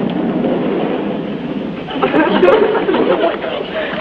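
Studio audience laughter from a sitcom laugh track, coming in two swells: the first eases off a little under two seconds in, and a second rises just after.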